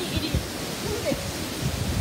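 Tropical cyclone rain and wind: a steady, even rushing hiss of heavy rain and gusting wind, with the wind buffeting the microphone in irregular low thumps.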